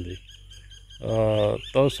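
A man speaking, pausing for under a second early on and resuming about a second in with a drawn-out word; faint bird chirps in the background.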